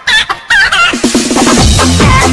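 Battery-powered dancing duck toy playing electronic bird-call sound effects: short wavy chirping calls, then a quick run of notes, and a techno-style beat starts about a second and a half in.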